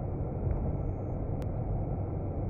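Steady rumble of a car's road and engine noise while driving at speed, heard inside the cabin through a dashcam's built-in microphone. A single sharp click sounds about a second and a half in.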